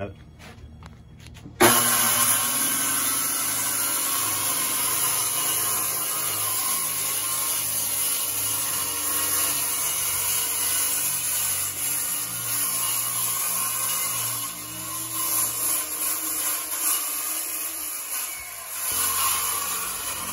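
Corded circular saw starting up suddenly about two seconds in and cutting steadily through a fiberglass boat deck, dropping out briefly near the end before cutting again.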